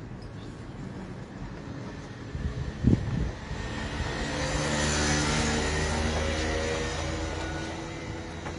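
A motor vehicle engine passing close by, swelling to its loudest about five seconds in and then slowly fading. A sharp thump comes about three seconds in.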